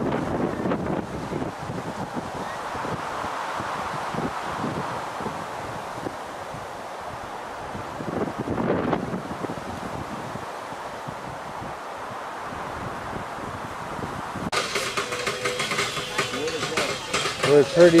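Wind noise on the microphone with faint voices of people nearby. About fourteen seconds in, the sound cuts abruptly to a steady low hum, and a man starts speaking near the end.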